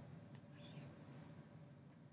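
Near silence: room tone, with a faint short high-pitched sound just over half a second in.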